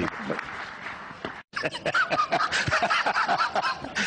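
Audience applause with crowd voices, dense rapid clapping; the sound drops out completely for an instant about one and a half seconds in, then the clapping resumes loudly.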